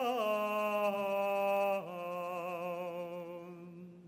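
A cantor singing a Hebrew prayer solo, holding long notes with vibrato. The melody steps down in pitch just after the start and again about two seconds in, and the last note fades away near the end.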